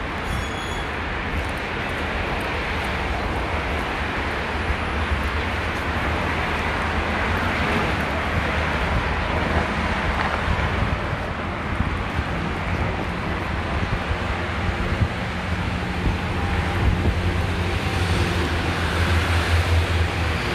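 Steady noise of road traffic from cars passing on a multi-lane city road below, with a heavy low rumble throughout.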